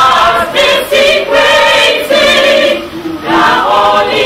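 A choir singing, the voices holding long notes.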